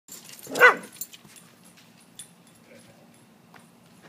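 A dog barks once, loudly and briefly, about half a second in.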